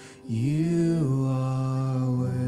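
Live worship song: after a brief lull, a voice with the band comes in on a long held note that slides up and settles, sustained steadily through the rest of the moment.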